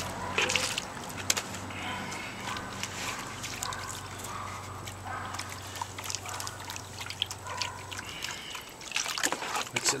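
Water sloshing and trickling as a plastic gold pan of concentrate is dipped and swirled in a tub of water, washing off the lighter material. A steady low hum runs under it and stops about eight seconds in, and the splashing grows louder near the end.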